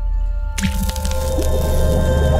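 Animated logo sting: music over a steady low drone and held tones, with a sudden wet, splashy hit about half a second in as the ink splat spreads.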